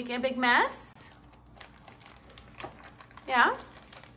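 A baby's voice: a short rising squeal at the start and another about three seconds in, with faint crinkling of paper packets and a plastic bag in between.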